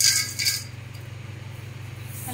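A handful of peanuts is dropped and scattered by hand into an aluminium pot of flattened rice (poha). It makes a brief, loud rattle of nuts hitting flakes and metal in the first half second, over a steady low hum.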